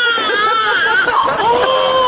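A person's high-pitched, drawn-out wailing cry: a long held note that trails off, a short wavering stretch, then a second long held note near the end.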